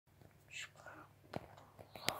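A person whispering faintly, with a light click about one and a half seconds in.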